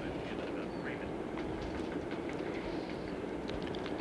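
Steady low murmur of a large gallery of spectators, with faint scattered voices and no distinct strikes.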